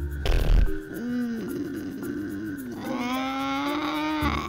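A cartoon character's voice making wordless hums and grunts, with a low thump about half a second in, over light background music.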